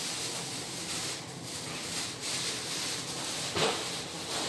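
Plastic apron rustling and crinkling as it is taken off, with a sharper crackle near the end.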